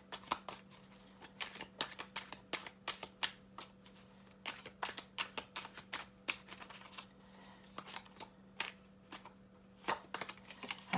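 A tarot deck being shuffled by hand: a run of irregular light clicks and slaps of cards, over a faint low hum.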